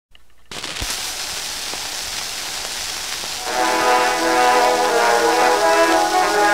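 Hiss and surface noise of an early acoustic gramophone recording, then about three and a half seconds in a brass-led band enters with sustained chords, the introduction before the singing.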